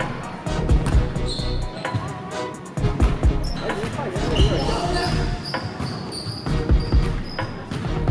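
Basketball dribbled on a hardwood gym floor: a run of dull, irregular bounces, with short high squeaks of sneakers on the court.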